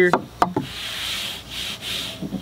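A short click, then about a second and a half of soft rubbing as a person brushes in against the wooden frame of a test wall.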